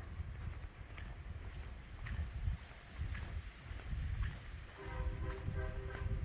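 Wind buffeting a handheld phone microphone in low, gusty rumbles, with faint footsteps about once a second as the camera operator walks along the road. Near the end, a brief faint pitched sound.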